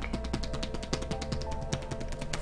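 Hacking massage: the edges of both hands strike an oiled bare back in a rapid, even run of light smacks. Soft background music with sustained tones plays underneath.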